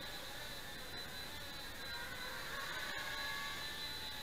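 Blade Nano QX micro quadcopter in flight: its four small motors and propellers make a steady whirring hum with a thin high whine, their pitch shifting a little in the second half.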